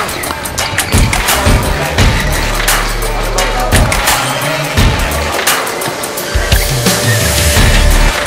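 Background music with a steady beat and a deep bass line.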